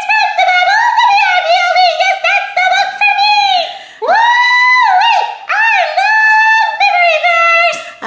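A very high, squeaky voice singing a short 'memory verse' jingle, its pitch swooping up and down in quick phrases, with a brief break about four seconds in.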